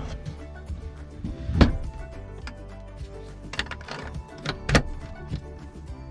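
Background music, with several sharp knocks of a wooden drawer being pushed shut and handled. The loudest knocks come about one and a half seconds in and near five seconds.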